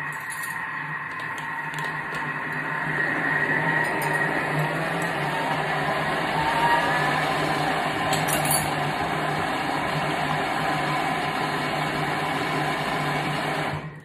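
Thermomix motor blending a bowl of steamed cauliflower at speed, a steady whirring hum that grows a little louder about three seconds in. It cuts off abruptly at the end of the blend.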